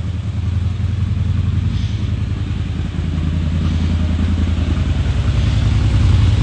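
CFMoto ZForce 950 Sport Gen2 side-by-side's V-twin engine idling steadily, with no revving.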